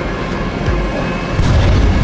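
Trailer sound design: a deep, rumbling boom with music underneath, growing louder about one and a half seconds in.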